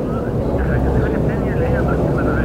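A steady low rumble of background noise, with faint, distant voices wavering over it.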